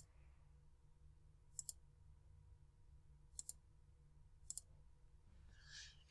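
Faint computer mouse clicks while wiring a circuit in simulation software: four of them, the last three each a quick double click, over a faint low hum.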